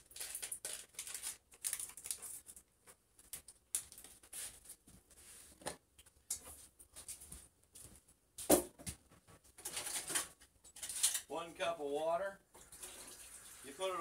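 Kitchen clatter: irregular clicks and knocks of cookware and utensils being handled, with one louder knock about eight seconds in. A voice sounds briefly near the end.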